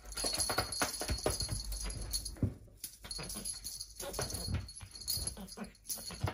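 Small bell on a string wand toy jingling in irregular bursts as a kitten bats at it with its paws.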